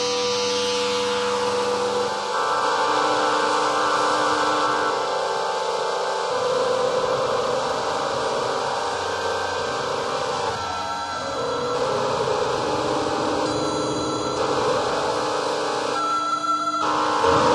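Atonal electronic music: many held tones stacked at different pitches over a steady hiss, the cluster of tones changing abruptly every few seconds.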